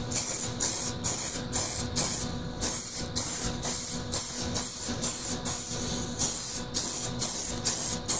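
Aerosol can of hairspray being shaken steadily, about two shakes a second, each shake a short hissing slosh of the liquid inside the can.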